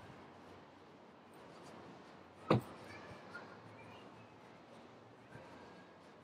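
Faint outdoor background noise, broken once about two and a half seconds in by a single sharp click.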